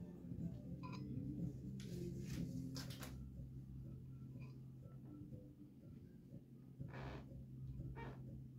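Quiet room noise: a steady low hum, with a few short rustling noises about two to three seconds in and again near the end.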